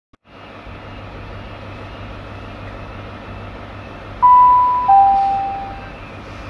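Railway station PA attention chime: two notes about four seconds in, the second lower than the first, each ringing and fading, the cue for a platform announcement. Underneath is a steady low rumble and hum of train and station noise.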